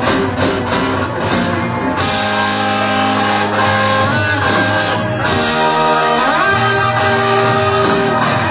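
Live rock band playing an instrumental passage led by electric guitar. Drums strike through the first two seconds, then the band holds long sustained chords, and a guitar note slides upward about three-quarters of the way through.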